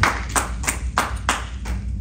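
Steady rhythmic hand clapping, about three claps a second.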